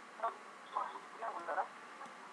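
A few short, faint, thin-sounding words from a voice heard over video-call audio.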